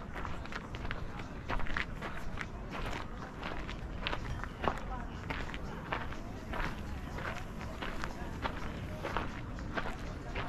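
Footsteps on a walking path, a steady series of short scuffs and taps, with people talking indistinctly in the background.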